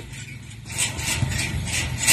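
Wind rumbling on the microphone, with soft rustling and handling noise from a hand-held phone.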